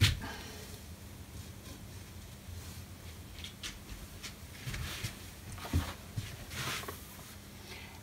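Faint handling noises in a small room: light rustles and soft knocks as soft toys and a paper booklet are moved about on a shelf, with a short knock right at the start.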